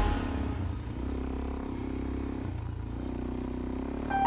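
Suzuki DR-Z400 single-cylinder dual-sport motorcycle engine running steadily while riding, with a brief dip in engine note about midway. Background music fades out at the start.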